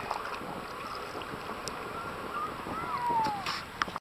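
Wind rushing over the microphone just above choppy bay water, with small waves lapping and slapping close by, swelling briefly near the end.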